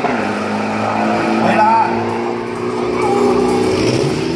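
A steady drone of background music and a car engine running, with a few brief words from a race announcer calling the time.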